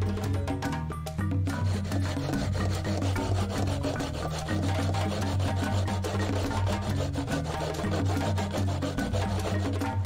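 Coconut flesh scraped on a homemade tin-can grater, a run of rasping strokes, with background music underneath.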